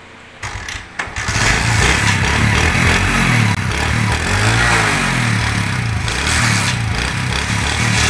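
Motorcycle engine started without the key, its black-and-white ignition wire disconnected: it catches about a second in and runs steadily, with one brief rev in the middle.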